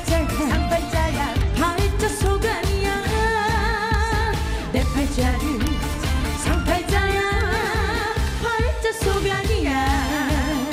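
A woman singing a Korean trot song live into a microphone over musical accompaniment with a steady beat. She holds long notes with a wide vibrato, twice.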